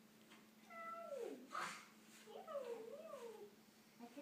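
A young child's wordless, high-pitched vocalizing: a long call falling in pitch about a second in, then a wavering, sing-song rise and fall.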